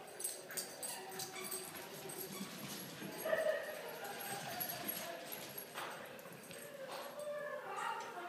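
Two puppies, a West Highland White Terrier and a Havanese, playing rough, with short dog vocal sounds and scattered clicks of scuffling, the loudest about three seconds in.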